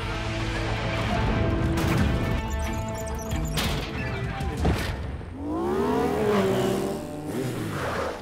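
Animated-cartoon action music with crash and impact sound effects as a giant doughnut smashes into a diner: several heavy hits in the first half, the sharpest about four and a half seconds in.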